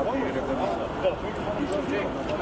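Indistinct talk of several people, over a steady background of city noise.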